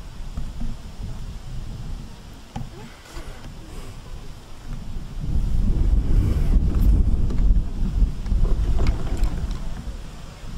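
Wind buffeting the microphone: an irregular low rumble that grows much stronger about halfway through and eases off near the end.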